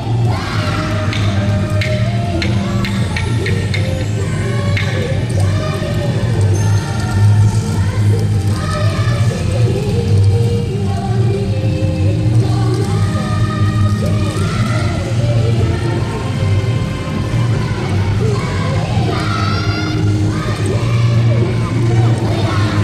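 Yosakoi dance music played loud over a sound system, with the dancers' shouted calls over it. A run of sharp clacks, about three a second, comes in the first few seconds.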